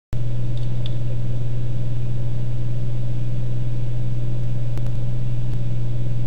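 A steady, unchanging low hum, with a faint tick or two about five seconds in.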